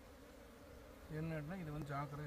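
A honeybee buzzing close by, starting about a second in: a low, steady hum that wavers slightly in pitch.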